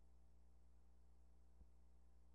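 Near silence: a faint steady low hum, with one faint click near the end.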